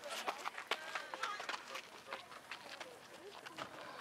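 Background chatter of overlapping voices, not loud, with scattered short clicks and knocks, more of them in the first two seconds.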